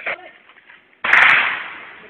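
A single gunshot about a second in: a sharp crack that echoes away over the next second, in a firefight with other shots just before and after.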